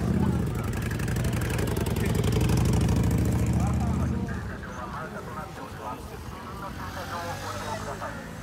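Cruiser motorcycle engine running at low speed close by. It is loud for about the first four seconds, then fades as the bike moves off, over the chatter of a walking crowd.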